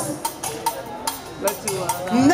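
Live band in a sparse percussive break with the vocals paused: sharp, clicky percussion hits, a few a second.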